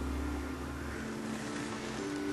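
Quiet, steady drone of a few held low tones over a low hum, from a soft background music bed.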